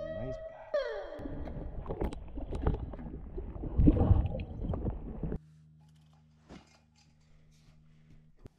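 Water splashing and gurgling close around a camera held under the lake surface while a smallmouth bass is let go beside a canoe, loudest about four seconds in, then cutting off abruptly to a faint low hum. Electric guitar music rings out briefly at the start.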